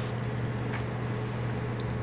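Faint mouth sounds of someone chewing a square of chocolate, with a few soft clicks, over a steady low hum.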